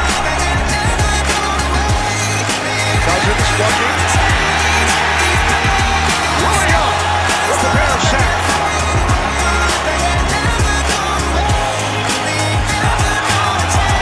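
Backing music with a steady beat and deep bass notes.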